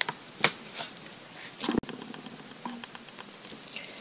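Light clicks and taps of small round metal nail-stamping plates being lifted and set down on a paper-towel-covered surface, with one sharper click a little before halfway.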